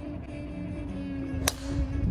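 A golf driver striking a ball off the tee: one sharp crack about one and a half seconds in, over background music with a held note.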